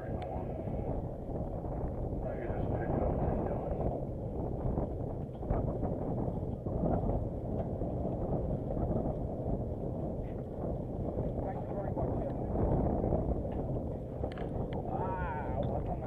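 Steady low rumble of wind buffeting the microphone on an open boat, with water noise underneath and faint voices now and then.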